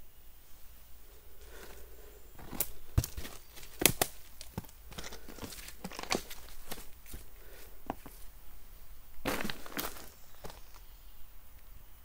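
Footsteps crunching over the stones, gravel and dry leaves of a dry streambed: an irregular run of clicks and crunches, loudest about four seconds in, with a denser patch of crunching near the end.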